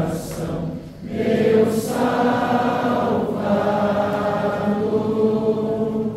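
Congregation singing a hymn together in many voices, with a brief breath about a second in, then a long held note that ends near the close.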